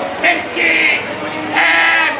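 A loud human voice calling out in drawn-out syllables, each about half a second long, several in a row, over steady street noise.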